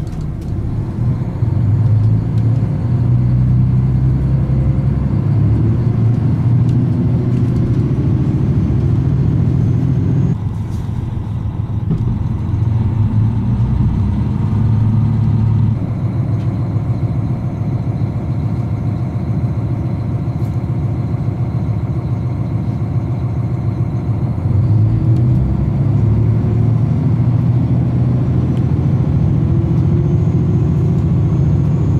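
Inside a SOYA limited express diesel railcar as it pulls away from a station and picks up speed. The steady low engine hum rises in the first couple of seconds, and its note shifts about ten seconds in, again near sixteen seconds and near twenty-five seconds. Under it runs the rumble of the train running on the rails.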